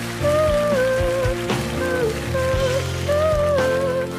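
A girl singing a slow ballad live over band accompaniment, in held, gliding melodic phrases of about a second each.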